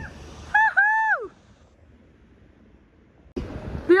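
A woman's high-pitched cry of delight, a short note and then a longer one that rises and falls away steeply, about half a second in. A quiet stretch follows.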